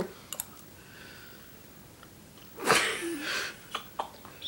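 A boy's mouth and breath sounds as he takes a spoonful of crushed chillies: a couple of small clicks at the start, then near-quiet, then nearly three seconds in a single loud, sudden burst of breath that trails off, as the chilli's heat hits.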